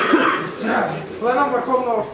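People talking, with a sharp click or cough-like burst right at the start.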